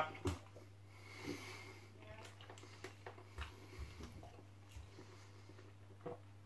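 Faint mouth sounds of a man chewing a mouthful of food and breathing through his nose, a few small soft sounds scattered through, over a low steady hum.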